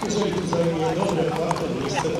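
Hooves of a grey Arabian racehorse clip-clopping at a walk on a paved path, about two strikes a second, under ongoing speech.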